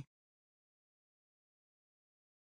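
Near silence: dead digital silence with no background sound at all.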